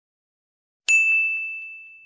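A single bell 'ding' notification sound effect: one sharp strike about a second in, then one high ringing tone that fades away over about a second, with a couple of faint ticks as it rings.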